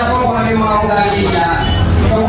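Background music with sustained melodic notes, with a man's voice through a microphone underneath.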